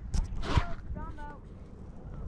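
A camera being handled and repositioned by hand, giving two sharp knocks in the first half second over a steady low wind rumble on the microphone. A faint distant voice comes in about a second in.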